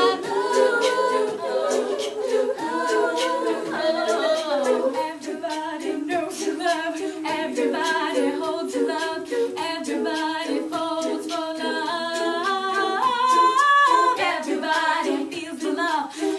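Women's a cappella group singing in close harmony, several voice parts holding and shifting chords together, with a higher line stepping upward near the end.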